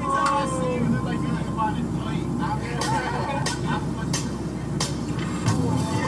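Intro of a hip-hop track: voices over a low, steady bass, with sharp drum hits coming in about halfway through at roughly one every two-thirds of a second.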